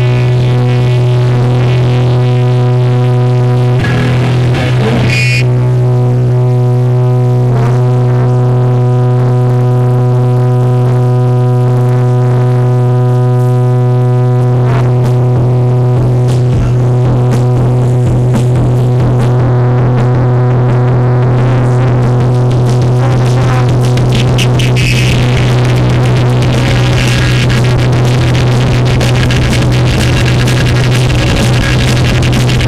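Hardcore punk band playing live, very loud and distorted: a heavy, steady low drone from the amplified bass and guitars runs throughout, with busier percussive hits building up in the second half.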